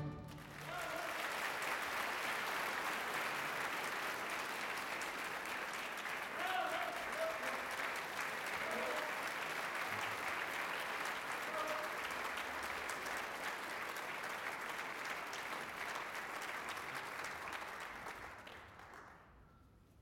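Theatre audience applauding, with a few voices calling out in the middle; the clapping fades out near the end.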